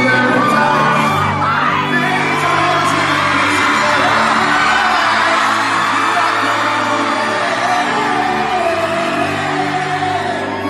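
Live amplified pop-rock concert music with a singer's voice, under loud cheering and screaming from an arena crowd, recorded from within the audience.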